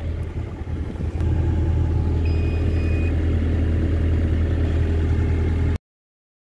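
The Kioti RX7320 tractor's diesel engine idles with a steady low hum, with a couple of knocks in the first second. A short high beep sounds a little past two seconds in, and the sound cuts off suddenly near the end.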